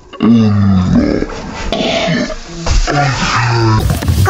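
A child's voice making low, drawn-out non-word sounds, two longer ones near the start and near the end with shorter ones between.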